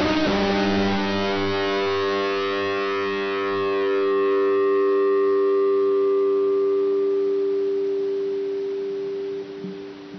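Closing chord of a song: a guitar chord struck once and left to ring out, its upper notes fading first, until it drops away sharply near the end.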